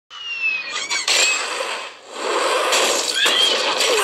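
Action-film sound effects: a high whine falling in pitch, then a loud wash of squealing noise that drops away briefly about halfway and returns, with short squealing glides near the end.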